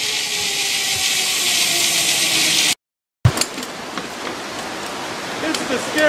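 Zipline trolley running along the steel cable: a steady hiss with a faint whine that slowly falls in pitch. It cuts off abruptly a little under three seconds in, and quieter outdoor background noise follows.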